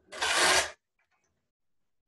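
A brief rustling noise, about half a second long, near the start.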